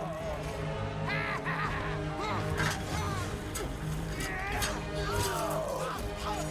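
Battle soundtrack: orchestral film score with men shouting and yelling over it, and several sharp impacts in the second half.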